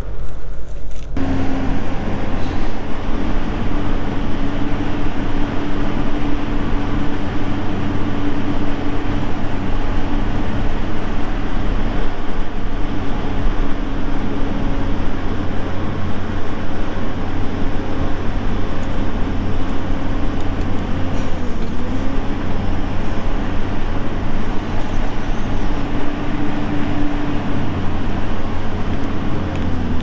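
Caterpillar 320C hydraulic excavator's diesel engine running steadily under load while its bucket and thumb push on a dead tree. The engine pitch dips briefly about two-thirds of the way through.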